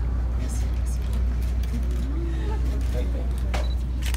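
Indistinct voices of people talking quietly, over a steady low hum that runs throughout; a couple of faint clicks near the end.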